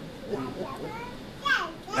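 Indistinct low talking in the room, then a higher-pitched voice gliding down in pitch about one and a half seconds in.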